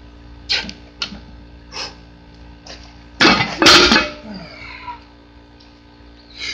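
A man breathing hard in short sharp puffs as he readies a 230 lb barbell for a one-handed lift, then about three seconds in a loud burst under a second long: a grunt of effort and the heavy thud and clank of the iron-plated bar.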